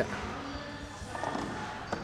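Low background room noise with faint voices in the distance, and a light click near the end.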